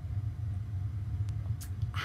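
Steady low hum of room background noise, with a few faint clicks in the second half.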